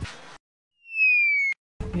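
An edited-in comic sound effect: a single loud whistle-like tone gliding down in pitch for just under a second, cut off by a sharp click, with dead silence on either side.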